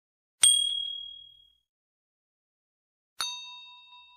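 Two ding sound effects from a subscribe-button animation. A bright, high ding comes about half a second in, and a second, lower bell-like ding comes about three seconds in; each rings out and fades over about a second.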